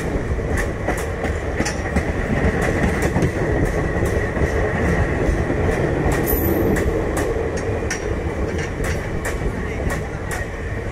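Indian Railways sleeper coaches rolling past at close range, a steady rumble with irregular sharp clacks of the wheels over rail joints and a faint steady high whine above.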